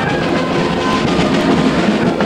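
Outdoor band music, thickened by the noise of a crowd.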